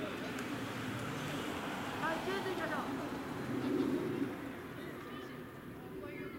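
Indistinct voices calling across an outdoor ballfield, loudest about two and four seconds in, over steady low background noise.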